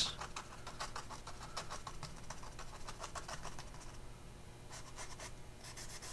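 Small round paintbrush stamping acrylic paint onto a painted cardboard surface: a quick run of faint dry taps and scratches, about four a second, thinning to a few taps after about four seconds.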